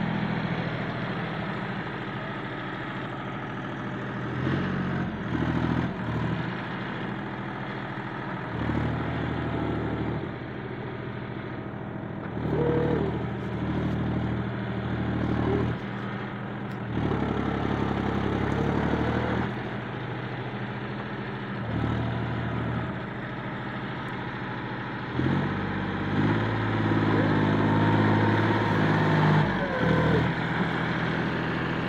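John Deere 5050D tractor's three-cylinder diesel engine running under load in wet mud, its revs rising in repeated surges of a few seconds each and dropping back between them, loudest and longest near the end.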